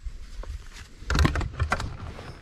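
A quick run of light clicks and rattles, close by, starting about a second in and over in under a second, over a faint low rumble.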